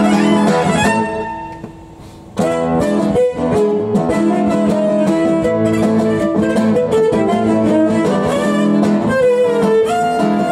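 Fiddle and acoustic guitar playing a folk tune together. The music dies away about a second in, and both instruments come back in sharply after about a second and a half.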